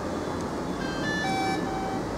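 DJI Phantom 4 Pro drone playing its power-on chime: a short tune of electronic beeps at several pitches, starting about a second in, over a steady low background noise.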